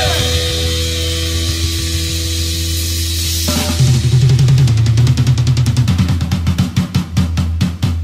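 Hardcore punk band recording near the end of a song: a chord rings on for a few seconds, then drums and bass come back in, and the drums speed up into a fast roll toward the end.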